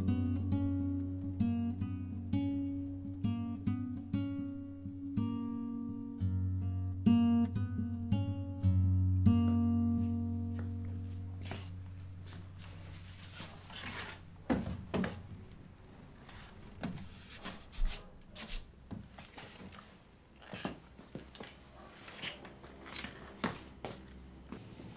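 Solo acoustic guitar music, slow picked notes over a low held bass, dying away about ten seconds in. After that, only faint rustles and light knocks.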